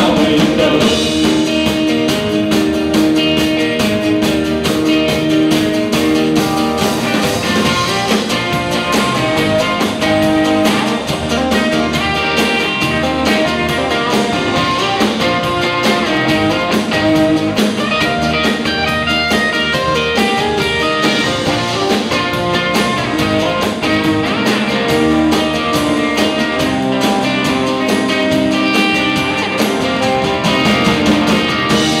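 Live rock band playing a song: electric and acoustic guitars, bass guitar and drum kit, loud and continuous.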